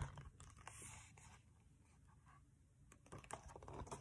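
Faint rustling and light taps of a picture book's paper pages being turned and handled, near the start and again near the end, with near silence between.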